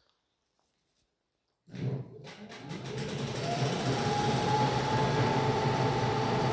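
Silence, then about two seconds in an electric scooter's hub motor, driven by a FarDriver controller under full throttle, spins up. Its hum and whine grow louder and settle into a steady whine with a high tone at about 1000 rpm.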